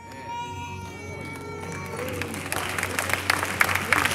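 A high note held for about two seconds, then congregation applause that builds and grows louder.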